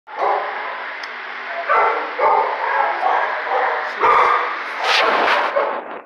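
Dogs barking in a shelter kennel room, the barks overlapping almost without a break, with louder bursts about two, four and five seconds in.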